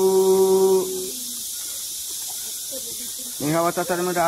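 A voice holding one long, steady chanted note that ends about a second in, followed by faint hiss until speech begins near the end.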